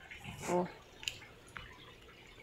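A few faint drips of water falling into a water tank, heard as soft ticks over a low background.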